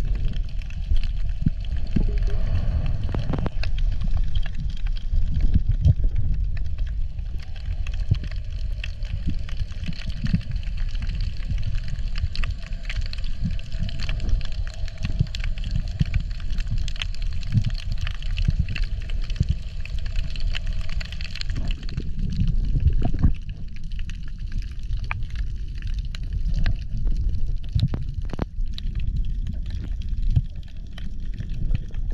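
Underwater sound heard through a camera housing: a low rumble of moving water with many scattered clicks and crackles, and a faint steady hum that fades out about two-thirds of the way through.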